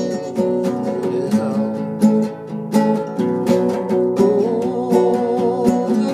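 Acoustic guitar strummed in a steady rhythm, an instrumental passage of a song.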